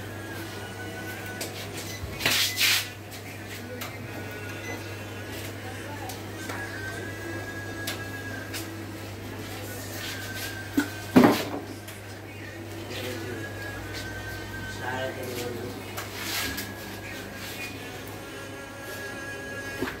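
Meat-market ambience of background voices and music over a steady low hum, broken by a few sharp knocks and thuds from butchering a beef carcass. The loudest knock comes about eleven seconds in.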